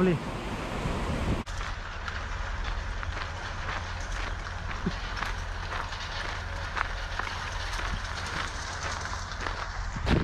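Footsteps on a tarmac path, faint and irregular, over a steady low rumble. Before a cut about a second and a half in, there is a brief noisy outdoor wash.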